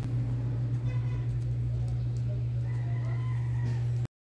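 A loud steady low hum, with faint drawn-out bird calls over it: a short one about a second in and a longer one lasting about a second near the end.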